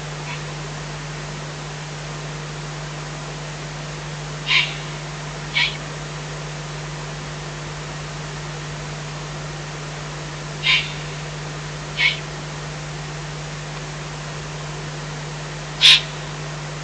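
Eurasian eagle-owl chicks giving short, hoarse, rasping calls, the young owls' food-begging call. Five calls come in loose pairs about a second apart, separated by several seconds of quiet.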